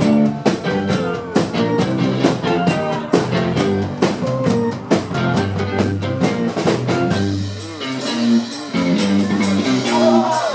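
Live 1960s-style freakbeat/garage band playing with electric guitar, keyboard and drum kit over a steady drum beat. In the last few seconds the bass thins out for about a second before the full band comes back in.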